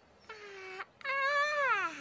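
A cartoon character's high, childlike voice gives a short wordless sound and then a long yawn that slides down in pitch near the end, a sign of tiredness.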